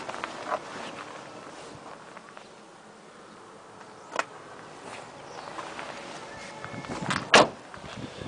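Faint handling noise with a single click about four seconds in, then a Citroën C3's car door shutting with a sharp clunk near the end.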